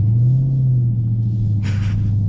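A Dodge Charger Scat Pack's 6.4-litre HEMI V8, running with a muffler delete, heard from inside the cabin as a deep steady drone whose pitch rises a little at the start and then holds. A short hiss comes near the end.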